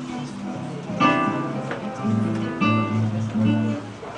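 Two acoustic guitars playing an MPB song together, fingerpicked with strummed chords. Louder chords are struck about a second in and again a little past halfway.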